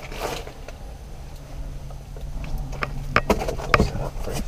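A few light, sharp clicks over a steady low hum, with a short rustle at the start.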